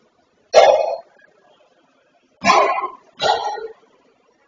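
Padel ball struck three times, sharp knocks each with a short echo from the enclosed court, the first about half a second in and two more close together near the end.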